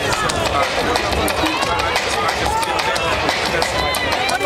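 Crowd hubbub: several voices talking over one another at close range, with no single speaker standing out.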